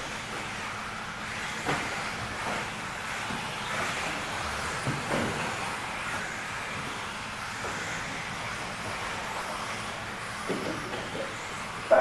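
Steady hum of a large indoor hall, with a few faint knocks scattered through it.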